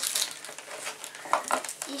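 Crinkling of a small clear plastic bag holding a novelty eraser as it is handled, in a run of short rustles.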